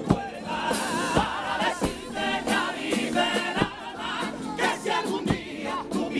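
Cádiz carnival comparsa: a male choir singing in harmony with guitar accompaniment and sharp percussion strokes at irregular intervals.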